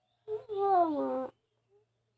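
A boy's drawn-out whining cry, about a second long, its pitch sliding steadily down: a squirming protest as his ear is cleaned and tickled with a thin stick.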